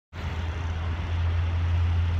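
Steady low drone of vehicle engines and road traffic.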